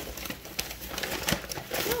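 Thin plastic packaging crinkling and rustling as it is handled, an irregular crackle of small clicks.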